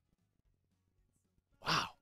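Quiet room tone, then near the end a single short breathy exhalation voiced as a soft "wow", like a sigh.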